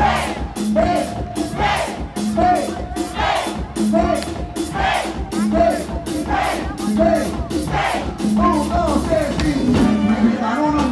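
Live band playing loud amplified dance music on drum kit, electric guitar and percussion, with a riff repeating about every second and a steady drum beat, while a crowd shouts along.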